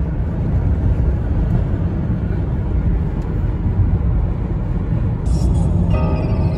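Steady low rumble of a moving car's road and engine noise, heard from inside the cabin.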